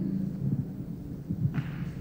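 Pause between talkers: the low steady hum of a PA system with faint thuds from a handheld microphone being handled as it is passed between speakers, and a brief rustle near the end.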